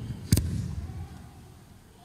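A single sharp thump about a third of a second in, with a short ringing tail that fades into a quiet, echoing room.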